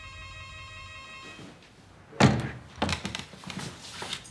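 An electric doorbell buzzes steadily for just over a second. About a second later a loud thunk and a few sharp clicks follow as the panelled apartment door's lock and latch are worked and the door is opened.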